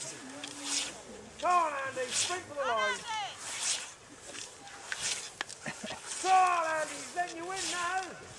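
Hand scythe blade swishing through long meadow grass in regular mowing strokes, about one every second and a half. Voices call out twice over the strokes.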